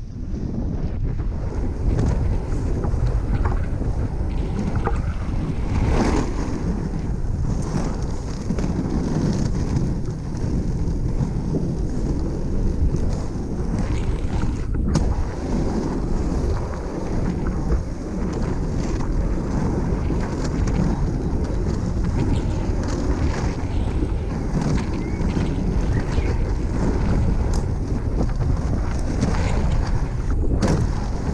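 Wind buffeting the microphone of a pole-held camera moving with a skater, mixed with the rumble of 110 mm inline skate wheels rolling over asphalt; a loud, steady noise throughout.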